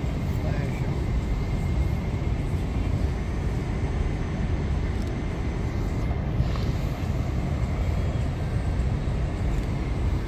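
Steady low rumble of city traffic heard from high above the street, with a faint thin steady whine over it.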